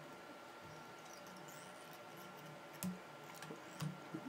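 Faint handling noise from hands and tools working thread at a fly-tying vise, with two small taps, the first about three seconds in and the louder, the second near the end.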